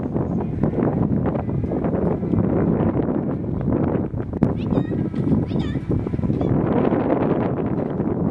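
Wind buffeting the microphone throughout, with a few short high-pitched animal calls about halfway through.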